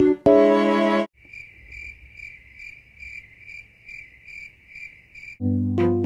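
A cricket chirping in even pulses, about two and a half chirps a second, after a keyboard chord dies away about a second in; music comes back in near the end.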